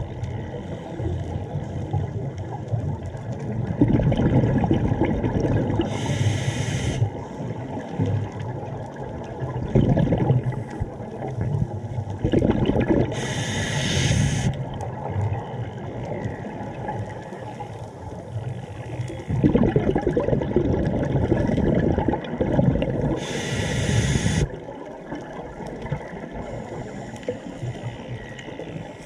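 Scuba breathing heard underwater through the regulator: three short hisses of air drawn through the demand valve, between longer low gurgles of exhaled bubbles.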